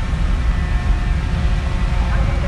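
Steady low rumbling noise with a faint hum running through it.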